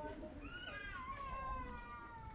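A single high-pitched, drawn-out cry, like a meow or a small child's wail, starting about half a second in, held for about two seconds and sliding slightly down in pitch at the end.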